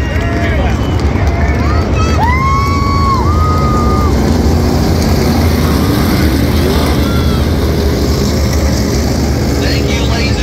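Race cars running laps on a short oval track, a steady loud engine drone, with voices heard over it.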